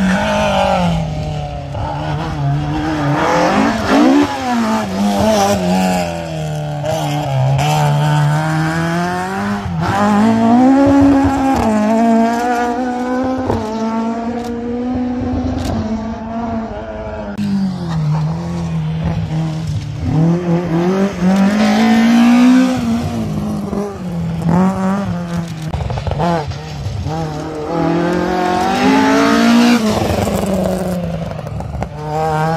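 Ford Escort rally cars' engines revving hard. The pitch climbs and drops again and again through gear changes and lifts, with louder swells as each car passes close.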